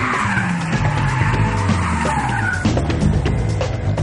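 Drift cars sliding, with engine revs rising and falling and tyres squealing. The squeal fades out about two and a half seconds in, with music playing underneath.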